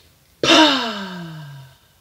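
A woman's long, voiced sigh on a deep out-breath. It starts loud about half a second in and slides steadily down in pitch over about a second and a half before fading out.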